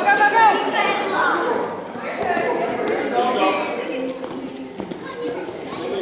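Indistinct voices of people in a hall, talking and calling out with no clear words, loudest in the first couple of seconds and quieter after.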